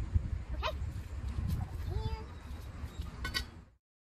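Hot forged steel knife blade quenched in a bucket of water, over a steady low rumble, with a few short squeaky voice sounds. A metallic clink comes near the end, as the tongs are set down on the anvil.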